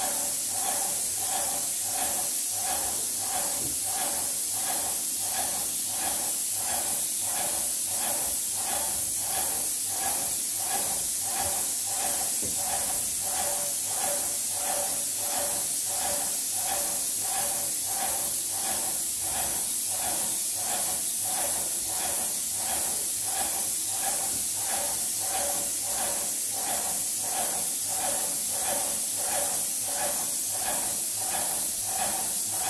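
Graco airless paint sprayer spraying paint: a steady high hiss from the spray tip, over an even mechanical pulsing about one and a half times a second from the sprayer's piston pump.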